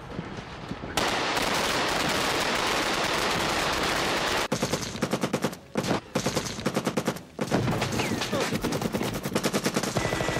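Film battle-scene sound: a dense noise starts suddenly about a second in, then rapid automatic gunfire from about halfway through, in bursts with two short breaks.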